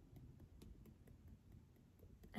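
Near silence with a few faint, irregular ticks: fingertips tapping on the body in EFT tapping.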